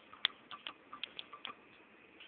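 A quick run of light, uneven clicks, about five a second, over a faint hiss.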